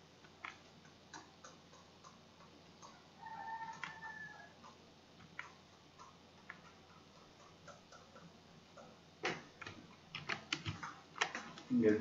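Sparse, faint clicking of a computer mouse while painting in Photoshop, growing busier and louder over the last few seconds. A brief hum comes about three seconds in.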